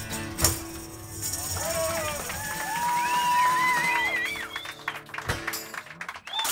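Live acoustic folk music: steel-string acoustic guitar ringing under a steady low drone, with voices holding long, wavering sung notes. A sharp percussive hit comes about half a second in and another near the end.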